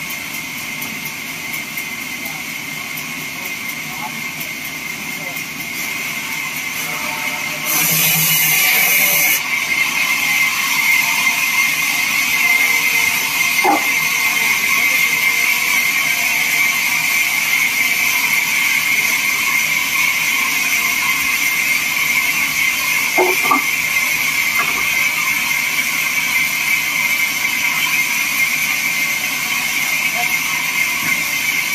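Vertical band saw running and cutting through a wooden slab, a steady high whine over noise. It grows louder about eight seconds in, with a brief hiss, and a couple of wooden knocks come later.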